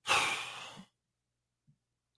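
A man's single breathy sigh, starting loud and fading over less than a second before it cuts off.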